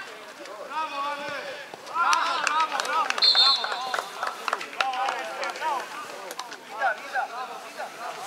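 Players' voices shouting across an open football pitch, with one short, shrill blast of the referee's whistle about three seconds in, signalling a stoppage.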